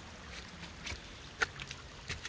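Faint steady trickle of water seeping out through the cracks and base of a mortared rock retaining wall, with a couple of small ticks about a second in. The seepage is groundwater building up behind the wall.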